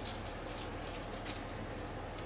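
Faint soft rustling and a few small ticks of latex-gloved hands pinching off soft dough and rolling it into a ball between the palms, over a low steady hum.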